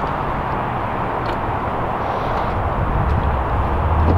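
Steady rushing outdoor background noise with a low rumble underneath and no distinct events.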